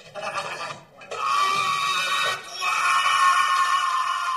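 An old man screaming: two long, high, steady held screams, the first starting about a second in and the second following after a short break.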